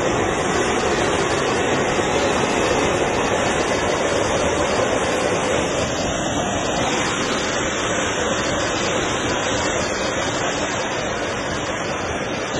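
Oxygen venting under high pressure from a leaking tanker fitting: a loud, steady hissing rush that eases slightly near the end.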